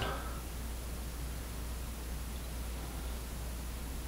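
Quiet room tone: a steady low hum under a faint even hiss, with no distinct sound.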